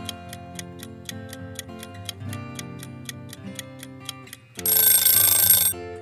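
Quiz countdown-timer sound effect: steady clock-like ticking, about four ticks a second, over sustained background music, then a loud alarm ring for about a second near the end, marking that time is up.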